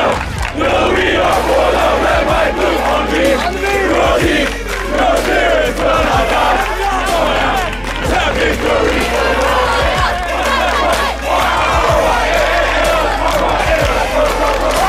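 A large group of young men's voices singing together loudly, many voices overlapping, over a steady low hum.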